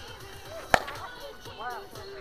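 A softball bat hitting a pitched softball: one sharp crack about three-quarters of a second in, with a short ring after it. Background music plays throughout.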